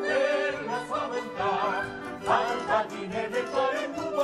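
Italian operetta ensemble number: voices singing with a strong vibrato over held orchestral notes.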